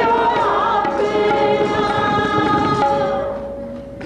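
Sikh kirtan: a man leads the singing over harmonium and tabla, with other voices singing along. The notes are long and held, and the sound fades down over the last second as a held note dies away.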